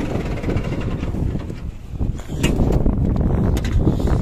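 A 100 hp New Holland (Fiat) tractor's diesel engine running loud and steady under load while driving a straw baler through its PTO, with a few sharp clicks about two to three and a half seconds in. The baler keeps clogging and the engine is straining.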